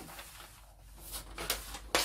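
Large sheets of pattern paper being lifted and shifted on a wooden table. A quiet first second is followed by a few short rustles and taps, the sharpest just before the end.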